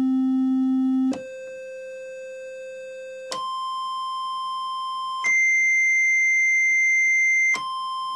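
Befako Even VCO eurorack oscillator sounding a steady, buzzy synth tone that its octave switch steps up one octave at a time, three jumps about two seconds apart, then drops back down an octave near the end.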